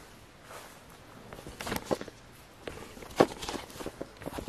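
Irregular footsteps and knocks on a debris-strewn wooden floor, a few scattered steps with two sharper knocks about two and three seconds in.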